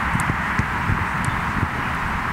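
Football being kicked back and forth on a grass pitch in quick passing: a run of irregular dull thuds from ball strikes over a steady hiss.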